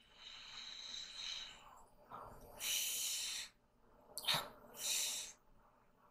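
Breaths of air hissing through a tracheostomy tube and its corrugated ventilator hose: three airy rushes about a second long, with a short click just before the last one.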